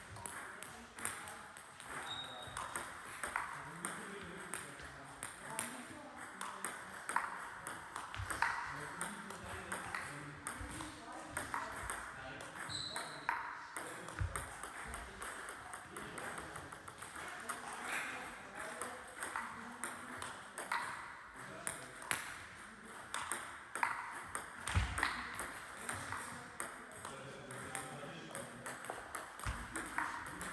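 Table tennis ball clicking back and forth between bats and table in rallies, several light clicks a second, with short breaks between points.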